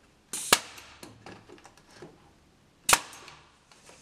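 Pneumatic nail gun firing twice into spruce boards, two sharp shots about two and a half seconds apart, with light knocks of the wood being handled between them.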